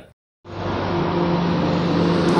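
After a brief dropout at the start, steady outdoor background noise with a low, even hum.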